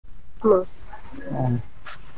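Two short vocal sounds: a brief, higher one about half a second in, then a lower, drawn-out one a second later.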